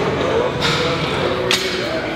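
A person's voice over a continuous background, with a short hiss about half a second in and a sharp click about a second and a half in.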